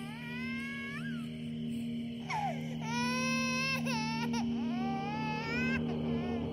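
A baby crying in several long, wavering wails over a steady low drone.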